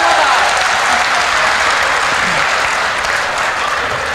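A large seated audience applauding, a dense steady clapping that tapers off slightly toward the end.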